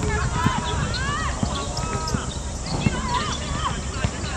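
Women footballers shouting and calling to each other during play, in short high calls that rise and fall, with scattered dull thumps.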